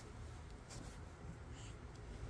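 Faint rustling with two soft brushes, about a second apart, over a low steady hum.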